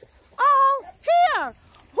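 Two high-pitched, drawn-out vocal calls, the second falling in pitch as it ends.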